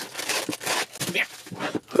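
Protective plastic film being peeled off a portable monitor's screen and back, a run of crinkling and small crackles.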